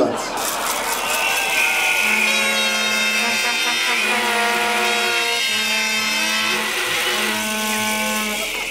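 Plastic protest horns (Tröten) being blown: several steady horn tones overlap, and one low horn sounds in four blasts of about a second each, over a general crowd hubbub.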